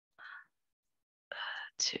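Only speech: short, soft, whispered fragments of a woman's voice, with louder speech starting just before the end.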